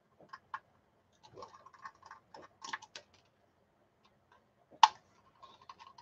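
Small metallic clicks and scrapes of a screwdriver working at the screws of a laptop hard drive, scattered and irregular, with one sharper click just before five seconds.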